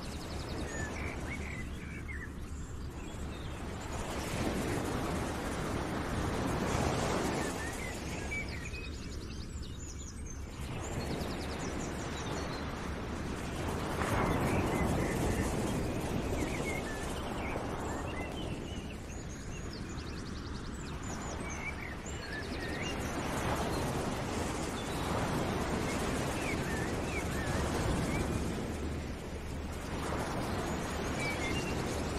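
Background outdoor ambience: a steady rushing noise that swells and fades every several seconds, with small bird chirps scattered through it.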